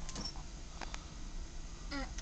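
A few scattered clicks of computer keyboard keys being pressed by a small child, over a steady low hum.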